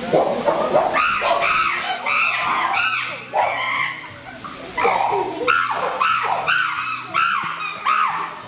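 Chimpanzees calling loudly: a run of rising-and-falling cries, about two a second, with a short lull around the middle, over faint background music.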